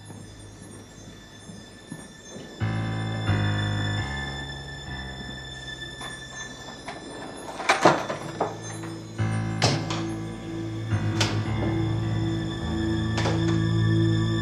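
Tense, suspenseful film-score music with sustained low chords that swell in stages. From about eight seconds in, it is punctuated by a few sharp knocks.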